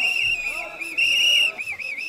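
A whistle blown in short rapid blasts, about four or five a second, with one longer blast about a second in, over faint crowd chatter.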